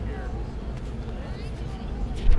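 Faint chatter of a few voices at a distance, over a steady low rumble.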